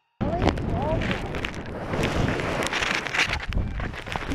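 Wind buffeting a small action camera's microphone during a tandem parachute landing, starting abruptly just after the start, with a few short voice sounds and scattered knocks from the harness and gear.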